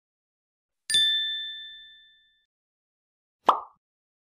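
Animated intro sound effects: a bright bell-like ding about a second in that rings out and fades over about a second, then a short, sharp pop-like hit near the end.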